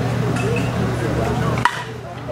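A baseball bat strikes the ball once, about a second and a half in, with a single sharp ping and a short ringing tone. It is the solid contact of a home-run hit, heard over background voices and a low hum.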